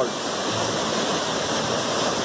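Jonha Falls, a hanging-valley waterfall in heavy monsoon flow, rushing: a steady, even noise of falling water.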